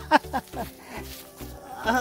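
A man laughing, a few quick laughs in the first second, over background music with a steady beat.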